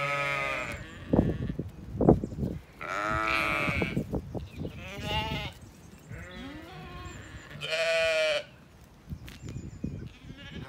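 Zwartbles sheep bleating close by, about five separate calls over ten seconds, some loud and some fainter. Two sharp thumps come in the first couple of seconds, and they are the loudest sounds.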